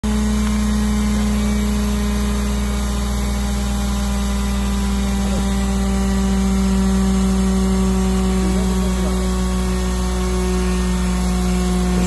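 Steady hum of the hydraulic power unit driving a rock splitter, one unchanging low engine-like tone with overtones, as the splitter's wedge is forced into a drilled hole to crack the rock.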